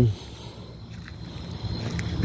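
A man's voice trails off at the very start, then a steady low background hum fills the pause, with one faint click about halfway through.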